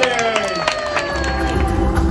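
A small crowd clapping and cheering, with one voice whooping in a falling pitch; the clapping dies away after about a second.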